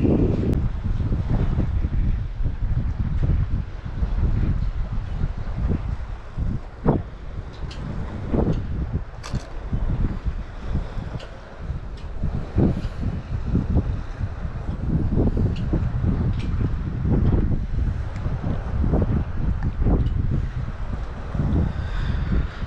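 Wind blowing on the microphone, a low rush that rises and falls in gusts, with a few small clicks around the middle.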